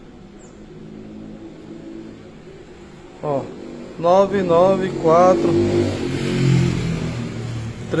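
A motor vehicle's engine running with a steady low hum, swelling into a louder rushing rumble about two-thirds of the way through.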